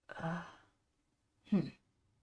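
A woman's voice: a breathy "uh", then about a second and a half in, a short "hmm" falling in pitch.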